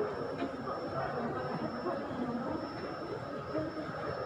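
Indistinct background chatter of many people in an airport terminal hall, a steady babble with no single voice standing out, over a faint steady high-pitched tone.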